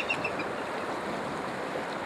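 Steady rush of river water, with a few short high chirps at the very start: the tail of a bald eagle's call.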